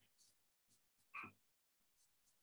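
Near silence: faint background hiss cutting in and out, with one brief faint sound about a second in.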